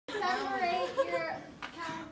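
Lively, high-pitched women's voices talking and laughing, with a short sharp click about one and a half seconds in.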